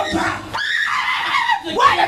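A woman's high-pitched, drawn-out cry close to the microphone, held for about a second and bending in pitch, with another rising cry near the end.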